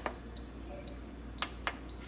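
Two quick plastic clicks about a second and a half in, from fingertip presses on an Instant Pot's control-panel buttons while its cooking time is being set. A faint steady high-pitched tone runs under them.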